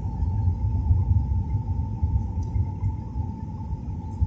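Jet airliner cabin noise heard at a window seat during descent: a fluttering low rumble of engines and airflow with a steady thin whine just below 1 kHz, in an Airbus A320-family aircraft.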